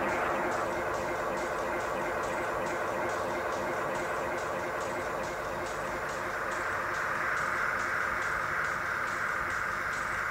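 Electronic dance music in a breakdown with the kick drum out: a sustained synthesizer wash with a steady light high ticking.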